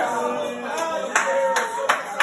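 Several sharp hand claps, about four in the second half, over a voice singing held notes.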